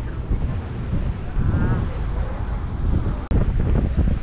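Wind buffeting the camera microphone in gusts, with waves washing onto the shore beneath it. The sound breaks off for an instant a little after three seconds in.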